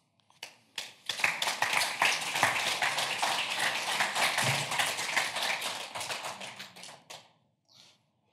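Audience applauding. It starts about a second in, runs as dense, steady clapping, and fades out about a second before the end.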